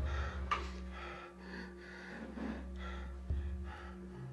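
A person breathing heavily in repeated short breaths over a low steady drone, with a sharp click about half a second in.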